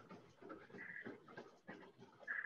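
Near silence with faint, quick taps about three a second: footfalls of a runner sprinting on a TrueForm Trainer, a curved non-motorized treadmill, heard faintly through a video call.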